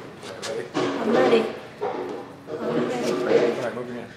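Laughter and squealing from people's voices, in several bursts, with some unclear talk mixed in.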